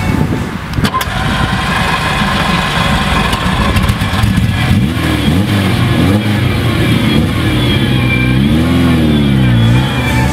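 Ferrari 308 GTB's 2.9-litre V8 starting up about a second in, then idling with blips of the throttle, the revs rising and falling, the biggest rev near the end.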